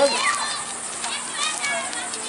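Children's voices in the background, talking and calling out in high voices.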